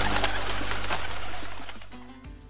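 Doves cooing over a rapid rustle of fluttering wings, with a low music tone underneath, fading out near the end.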